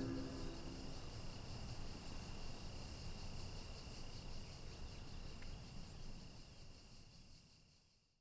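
A steady chorus of chirping crickets, which fades out over the last few seconds. It begins just as the last notes of guitar music die away.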